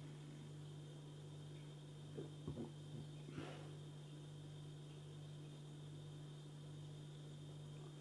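Faint room tone with a steady low hum. Between about two and three and a half seconds in come a few soft sniffs, as a person smells the aroma of a glass of beer held at the nose.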